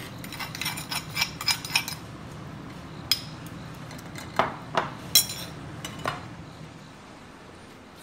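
Metal spoon clinking and scraping against a metal mesh strainer and a stone molcajete while crushed mint is strained: a quick run of light clicks at first, then about five separate clinks.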